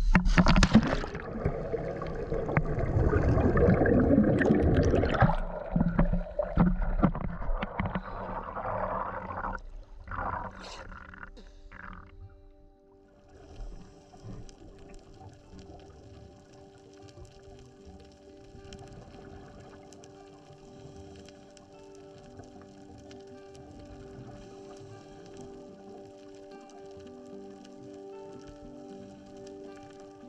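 A scuba diver rolling backward into the sea: a loud splash, then water and bubble noise that fades out over about ten seconds. From about thirteen seconds, quiet background music with held notes.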